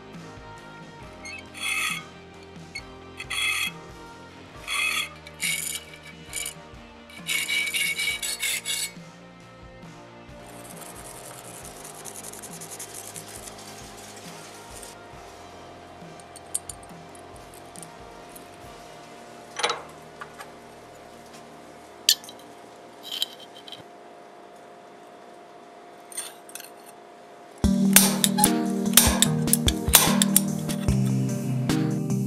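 Hand file rasping across an O-1 tool-steel knife blade clamped in a vise, in separate strokes about once a second over the first nine seconds, with background music. Near the end a louder, continuous machine noise starts.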